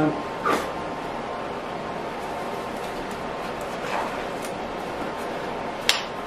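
Black disposable gloves being pulled onto the hands: a few short rubbery snaps and rustles, the sharpest just before the end, over a steady background hum.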